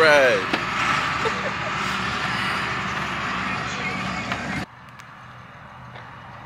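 Hayride wagon on the move: a steady low vehicle hum under a rattly, noisy rush. About four and a half seconds in it cuts off abruptly to a much quieter low rumble.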